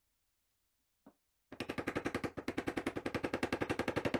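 Soft-faced mallet striking the handle of a Stanley Bailey bench chisel to chop into an MDF panel: one light tap about a second in, then a fast, even run of blows from about a second and a half on.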